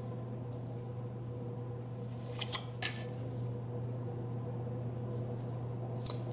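Planner stickers being handled and pressed onto paper pages: a couple of brief soft clicks and rustles about halfway through, over a steady low hum.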